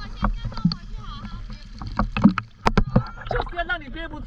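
Sea water sloshing and splashing against an inflatable freediving buoy at the surface, with a few sharp splashes between about two and three seconds in.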